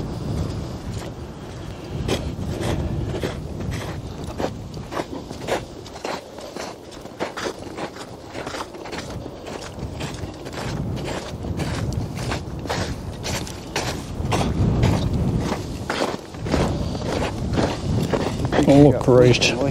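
Footsteps on a snowy trail at walking pace, about two steps a second.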